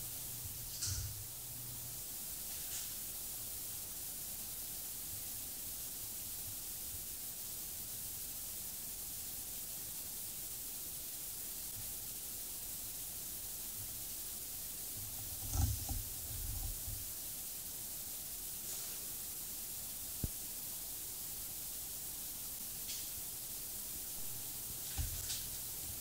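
Steady hiss of a camera's recording noise in a quiet empty building, broken by a few soft bumps and one sharp click about twenty seconds in.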